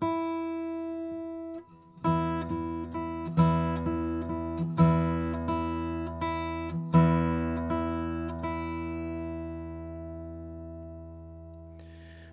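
Acoustic guitar fingerpicked in a harp-style pattern: thumb and ring finger plucked together, then the middle and index fingers. A first note rings briefly, then about two seconds in a steady run of plucked notes begins, with a stronger bass note every second and a half or so. It stops about eight and a half seconds in and is left to ring out.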